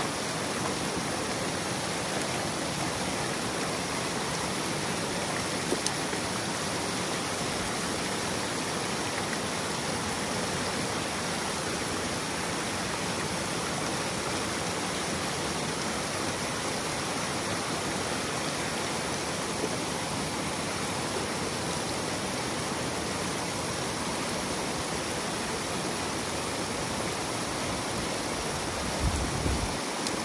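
Water rushing steadily through a breach opened in a beaver dam, spilling as a small waterfall into a churning pool below, with a brief low thump near the end.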